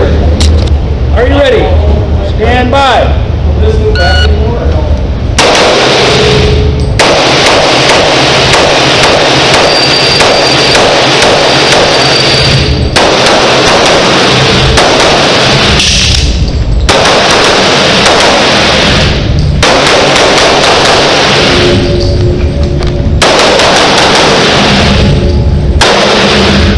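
Pistol fire in an indoor range during a USPSA stage run: long strings of rapid shots, loud enough to swamp the recording, starting about five seconds in and broken by short pauses every few seconds.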